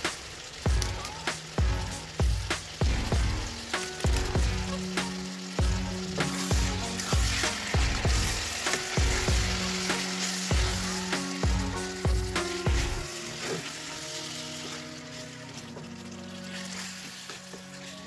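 Chicken and onions sizzling as they fry in a stainless steel pan, stirred with a wooden spoon. Background music with a steady beat plays over it, the beat dropping out about two-thirds of the way through while the music goes on.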